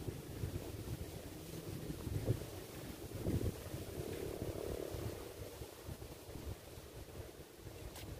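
Wind blowing on the microphone, an uneven low rumble that rises and falls in gusts.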